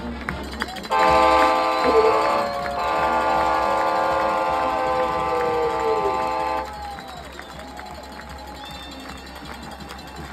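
A marching band's horns hold one loud sustained chord, starting about a second in and cutting off sharply after about five and a half seconds, over stadium crowd noise.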